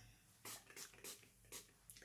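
Near silence, broken by four or five faint, very short hisses or ticks.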